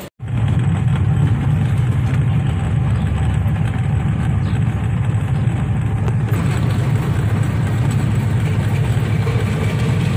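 Steady low engine drone and road noise of a vehicle being driven along a road, heard from on board.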